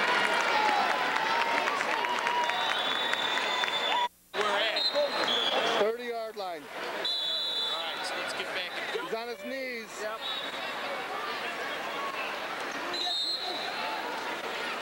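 Crowd chatter and shouting voices in a busy gymnasium during wrestling matches. The sound drops out for a moment about four seconds in, where the recording cuts to another match.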